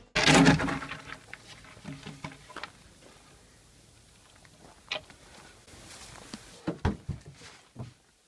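Knocks, bumps and scrapes from a sheet of plywood being handled and stood against a doorway, the loudest about half a second in, with more scattered knocks later.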